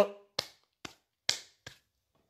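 Four short, sharp clicks about half a second apart, the third with a slightly longer tail.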